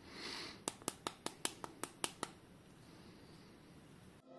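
Fingers handling a POCO X5 Pro smartphone: a brief soft brushing rustle, then a quick run of about nine light clicks or taps over a second and a half, then quiet handling.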